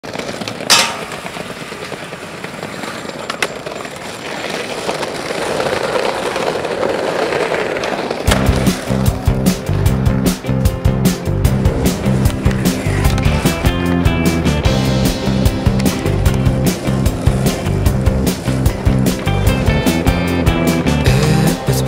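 Skateboard wheels rolling on pavement, with a sharp clack about a second in and a lighter one a few seconds later, the rolling growing louder. Music with a heavy beat starts about eight seconds in and carries on.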